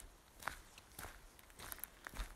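Near quiet: a low steady background hum with a few soft taps, the clearest about half a second in.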